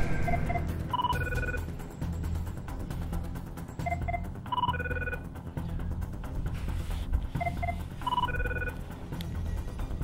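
Mobile phone ringing with an electronic ringtone: a short melody of beeps, heard three times about three and a half seconds apart. Background music with a deep bass runs underneath.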